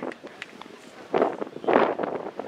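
Two short shouts from footballers on the pitch, about a second apart in the second half, over quiet outdoor background.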